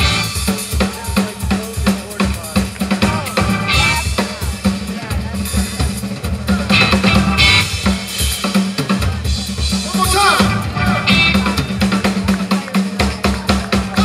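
Live blues-rock band playing a song: a busy drum-kit beat with bass drum and snare, electric guitar and Hammond organ, with shouted voices at times.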